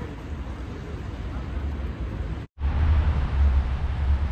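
Outdoor street ambience: a steady noisy hiss, then, after a brief break in the sound about two and a half seconds in, a louder low rumble of wind on the microphone.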